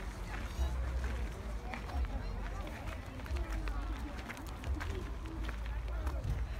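Background chatter of other shoppers' voices, with a steady low rumble on the microphone and scattered small clicks.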